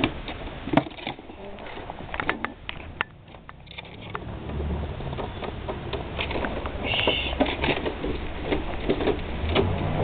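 Handling of a wooden box trap on grass: scattered knocks and clicks of wood, with a low rumble from about halfway through.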